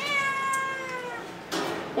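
A domestic cat meowing once: one long meow of about a second that slides slowly down in pitch.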